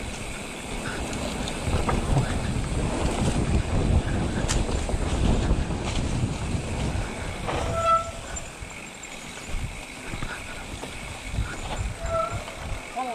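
Mountain bike ridden along a bumpy dirt singletrack: wind buffeting the microphone over the rumble and rattle of tyres and frame on the trail, easing off about two-thirds of the way through. A short high tone sounds once at about the point where it eases.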